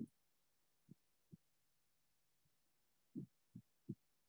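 Near silence on an open conference-call line: a faint steady low hum with a few soft, short low thumps.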